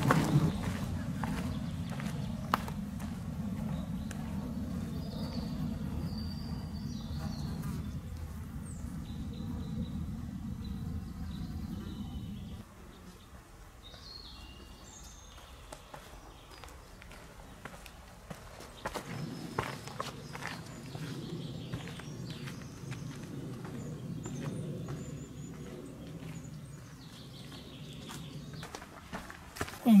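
A hiker's footsteps on a dirt forest trail over a low rumble on the microphone, which drops away for several seconds about halfway through. Faint bird chirps are heard throughout.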